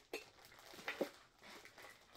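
A few faint metallic clicks and clinks as a Funko Soda collectible can is handled and opened by hand.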